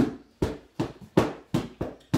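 A martial-arts training stick striking a hand-held pad again and again, about three sharp hits a second.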